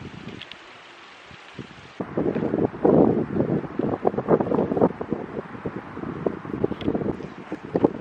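Wind buffeting the camera microphone in uneven gusts. It is a low hiss at first and turns louder and rougher from about two seconds in.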